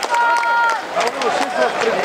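Several people's voices calling out over one another, with one long held call near the start and scattered sharp knocks.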